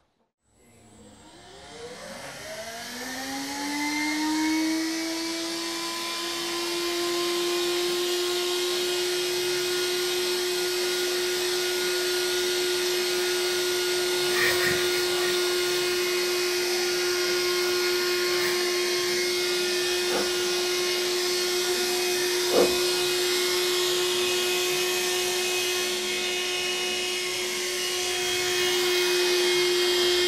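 MECO cordless handheld vacuum motor spinning up, its whine rising in pitch over the first few seconds, then running at a steady pitch with a hissing airflow. A few sharp clicks are heard partway through.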